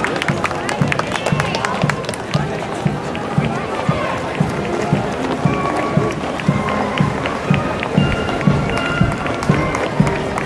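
A marching band playing as it marches, with a steady bass-drum beat about twice a second and spectators talking.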